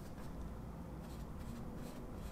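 Faint, soft scratching of a flat paintbrush dragging acrylic paint across stretched canvas while a second coat is laid on.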